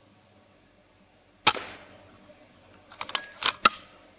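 Weihrauch HW100 .22 pre-charged air rifle firing: a sharp report about a second and a half in, then near the end a quick run of clicks and two more sharp cracks.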